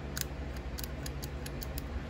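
Small metal clicks, about eight of them at irregular intervals, from hands working the parts of a field-stripped Makarov pistol frame, around its combined slide stop and ejector.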